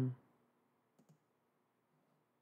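The tail of a spoken word, then near silence broken by a faint computer mouse click about a second in, as the on-screen button is pressed.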